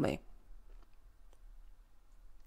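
A woman's voice finishes a word, then a short pause holds a few faint, scattered clicks.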